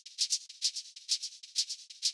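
Shaker sample playing a steady pattern of short, bright, hissy hits, about four a second, with no low end. It is being transposed up a semitone or two.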